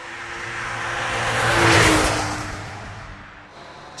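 A car passing by: the noise swells to a peak about two seconds in and then fades, and the engine note drops in pitch as it goes past.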